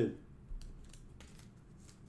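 Faint rustling and a few light clicks of a trading card being handled and moved aside by hand.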